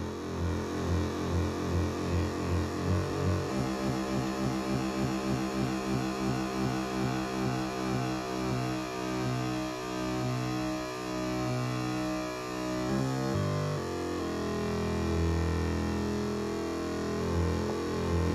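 Arturia MicroFreak synthesizer holding a low, buzzy FM note. Its tone pulses at first, then shifts abruptly twice, about three and a half seconds in and again near thirteen seconds, as the oscillator's FM fine-tuning is adjusted.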